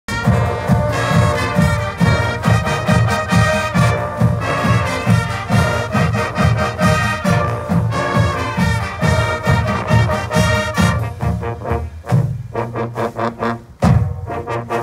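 A large high school marching band playing outdoors: massed brass, including sousaphones, trombones and trumpets, over a steady low beat. About eleven seconds in, the higher brass drops away and the lower parts carry on.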